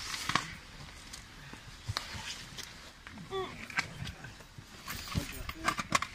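Rescue handling noise at a well shaft: scattered knocks, clicks and rustling of rope and gear as a dog is hauled up, with a few brief fragments of voice.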